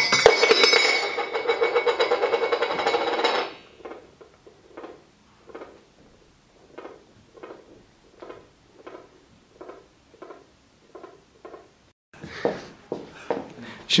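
A small metal lidded bowl falls from a table onto a wood-laminate floor: a loud metallic clatter with ringing as the lid and base hit and roll, dying away after about three and a half seconds. Faint, evenly spaced taps, about two or three a second, follow.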